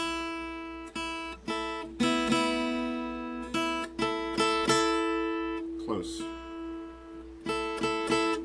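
Acoustic guitar picking out a melody line, single notes and pairs of notes struck one after another, each ringing and fading, over a note left ringing underneath like a drone.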